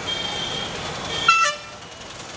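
City street traffic: motorcycles and an auto-rickshaw running past, with a short vehicle horn toot about a second and a half in, the loudest moment.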